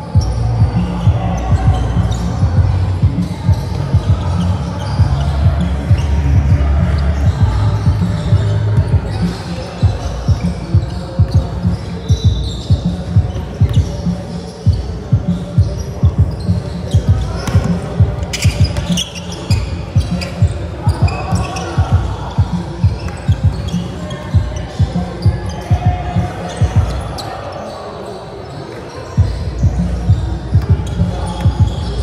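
A basketball bouncing on a hardwood gym floor in repeated thuds, about two a second over long stretches, with players' voices echoing in the large hall.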